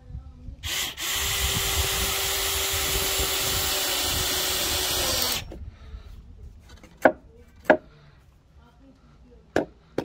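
Cordless drill-driver driving a long wood screw into timber, the motor running under load at a steady pitch for about five seconds before stopping. A few short sharp knocks follow.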